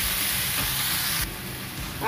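Mixed vegetables sizzling as they stir-fry in a nonstick frying pan, turned with a wooden spatula. The sizzle drops off abruptly a little over a second in.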